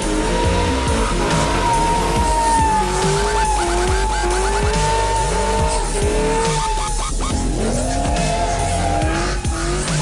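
Supercharged LSA V8 of an HSV Maloo ute revving up and down repeatedly as it drifts, tyres squealing against the tarmac, with music playing underneath.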